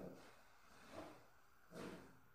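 Near silence: room tone, with two faint, brief soft sounds, one about a second in and one near the end.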